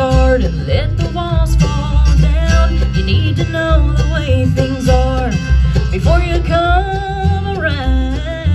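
A bluegrass band playing live, with banjo, mandolin, acoustic guitar and upright bass under a held melody line that bends and wavers in pitch.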